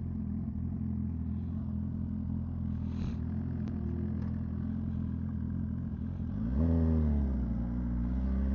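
Suzuki GSX-R1000 inline-four sportbike engine idling steadily, then revving up briefly as the bike pulls away about six and a half seconds in.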